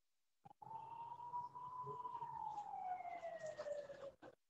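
A siren winding down: one wailing tone that rises a little and then falls slowly in pitch, joined near the end by a second, higher falling tone. It cuts in and out abruptly with a hiss behind it, as if through a call participant's open microphone.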